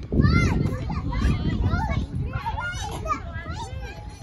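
Children playing on a playground: high-pitched voices calling and chattering over one another, with a low rumbling noise underneath that is heaviest in the first second.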